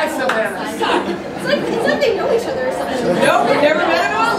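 Several voices talking over one another at once, chatter with no clear words, in a large room.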